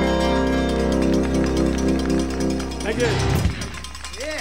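A live country band holds its final chord, with electric guitar ringing over the band, and dies away about three seconds in. A voice is heard near the end.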